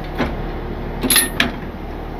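Metal chain and hook clinking and clanking as a hitch chain is hooked up and pulled tight. The loudest is a quick cluster of sharp metallic strikes about a second in. A steady low engine hum runs underneath.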